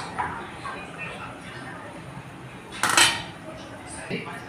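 Steel slotted ladle stirring khichdi in a metal kadai, clinking and scraping against the pan, with one loud metal-on-metal clank about three seconds in.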